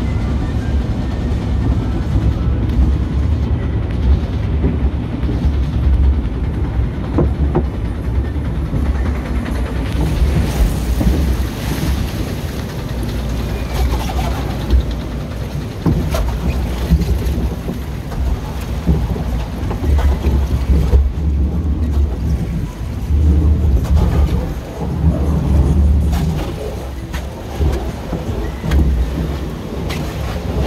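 Log flume ride boat moving along its water channel: a steady low rumble of the boat and water, with scattered knocks. Water splashes onto the boat's shield near the end.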